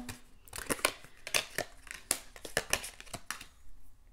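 Tarot cards being drawn from a deck and laid down on a table: a run of quick flicks, slides and taps of card stock that dies away about three and a half seconds in.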